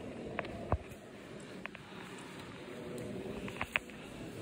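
Background murmur of visitors in a large stone church, with a few scattered short clicks and knocks, the sharpest about three-quarters of a second in and another pair near the end.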